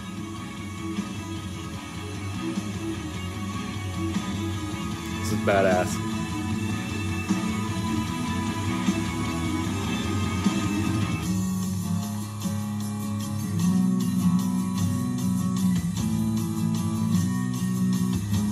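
A rock song with guitar playing from a radio.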